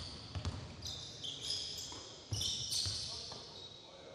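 A basketball dribbled on a hardwood gym floor, giving a few dull thumps, while sneakers squeal in high-pitched squeaks as players cut and stop.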